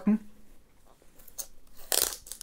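Plastic shrink-wrap film on a hardcover mediabook being picked at and torn open by hand: a faint crackle about halfway through, then a short, louder rip near the end.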